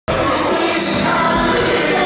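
Basketball dribbled on a hardwood gym court during play.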